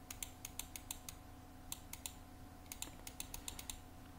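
Light, rapid clicks from a computer's input controls, in quick runs with a short gap in the middle, while a brush stroke is drawn in an image editor.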